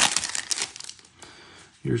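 Foil trading-card pack wrapper crinkling as it is pulled open by hand, with sharp crackles that die away about a second in. A man's voice starts near the end.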